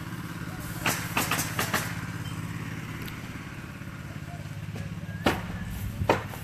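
Roofing nails being driven into asphalt shingles: a quick run of four sharp knocks about a second in and another near the end, over a steady engine idling.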